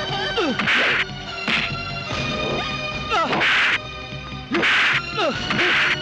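Stylised fight-scene sound effects: about five loud punch and whip-crack hits with falling swishes, spread over six seconds, over a dramatic film score.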